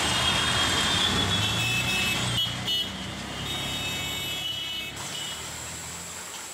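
Ride inside an auto-rickshaw in city traffic: the engine runs with a steady low drone while vehicle horns toot. About five seconds in, the traffic noise drops away to a quieter hiss.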